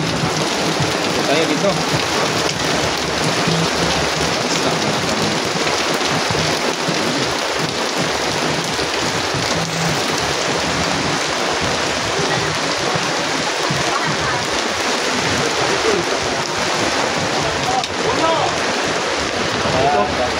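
A steady, loud hiss that sounds like rain, with scattered voices from a crowd underneath.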